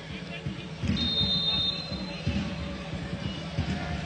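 Football stadium crowd noise, with a short high referee's whistle about a second in, signalling a free kick.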